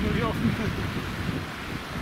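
Strong wind buffeting the microphone with a steady rumbling roar.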